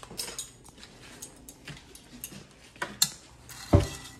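Chopsticks clicking and knocking against a frying pan as fettuccine is pushed down into boiling water, in scattered taps, with a heavier thump near the end.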